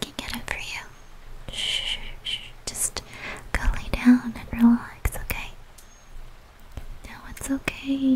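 A woman whispering, with short sharp clicks between phrases.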